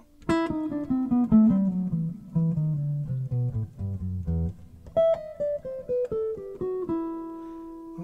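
Jazz guitar playing single picked notes in a bebop harmonic minor scale pattern: one run descends steadily into the low register, then about five seconds in a second run steps down from a higher note and ends on a held note.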